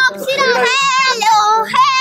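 A child's high voice in a drawn-out sing-song, wavering up and down in pitch.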